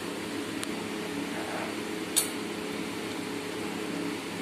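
Steady background hum in a kitchen, with one sharp metallic clink, a spoon or ladle against the curry pan, about two seconds in and a fainter tick earlier.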